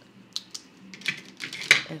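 Hands handling a ring binder and its paper card and cash pouch: a few light clicks and taps, then a louder cluster of clicks and rustles near the end.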